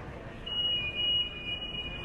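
A steady high-pitched tone, two close pitches held together like a buzzer or alarm, starting about half a second in and lasting about a second and a half over low city street ambience.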